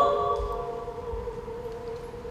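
A female classical singer's phrase ends on a high held note, then a soft held tone with a slight waver lingers over a sustained accompaniment chord, both slowly fading away.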